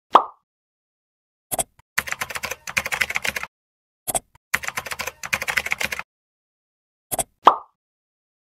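Sound effects for a computer login: a pop, a mouse click, a fast run of keyboard typing, another click and a second run of typing, then two clicks and another pop near the end.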